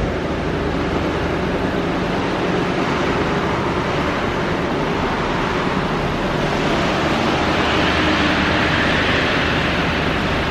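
Steady rushing noise with no distinct events, growing a little brighter about eight seconds in.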